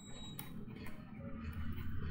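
Low steady hum and faint background noise on the recording, with no speech.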